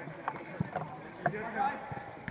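Players' voices calling out on a football pitch, with a few sharp thuds of the ball being kicked, the loudest just over a second in.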